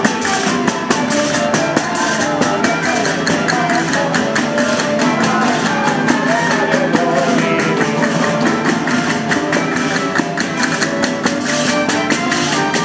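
A live folk ensemble playing a Christmas carol (villancico): strummed acoustic guitars and other plucked strings with violins, over a steady rhythm of jingling frame drums (panderetas).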